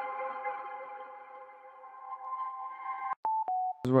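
Reverb-drenched tail of a mallet-like sample melody: several held tones ringing on and slowly fading, then stopped abruptly about three seconds in, followed by two short clicks and two brief tones stepping down in pitch. A voice starts right at the end.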